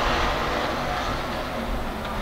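Hobby stock race cars' engines running as a pack on a dirt oval: a steady wash of engine noise that fades slightly.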